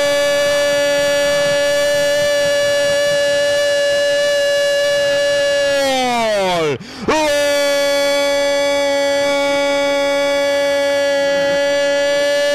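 Radio football commentator's long goal cry, a single "gooool" held at a steady high pitch. About six seconds in it slides down and breaks off for a quick breath, then he holds it again.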